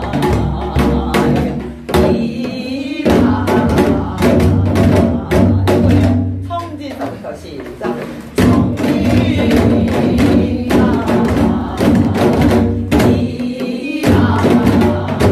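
Janggu, the Korean hourglass drum, struck in a fast variant jajinmori rhythm (12/8), accompanying a woman singing a Gyeonggi folk song with long held, ornamented notes. The drum strokes thin out for a moment about halfway through, then pick up again.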